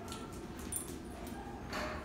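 A dog moving about, faint, with a few brief high clinks about a third of the way through.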